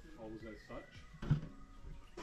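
A person's voice speaking briefly and softly, with a single sharp knock a little past the middle.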